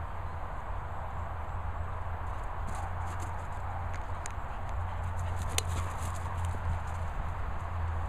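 Wind rumbling on the microphone of an outdoor handheld recording, with a few soft clicks and thuds scattered through the middle.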